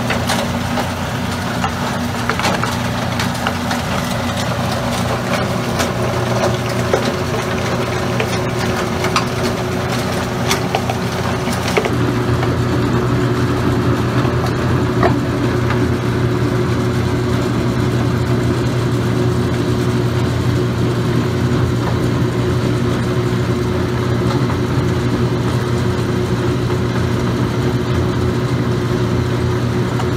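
Ore-processing machinery running: a steady mechanical hum under a constant noisy wash of water and grit, with scattered small clicks, as the shaker table works wet ground ore. The sound shifts slightly and grows a little louder about twelve seconds in.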